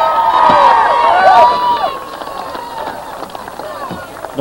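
Crowd in the stands cheering and yelling, many high voices overlapping. It is loudest over the first two seconds, then dies down.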